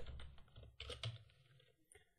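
Faint typing on a computer keyboard: a few keystrokes in the first second or so.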